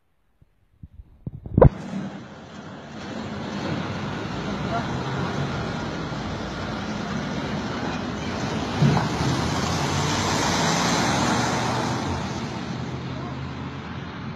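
Steady road traffic noise that swells as a vehicle passes about ten seconds in, after a sharp knock about a second and a half in.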